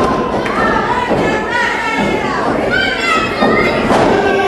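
Thuds of wrestlers' bodies hitting the canvas of a wrestling ring, one at the start and another near the end, under high-pitched shouting from spectators.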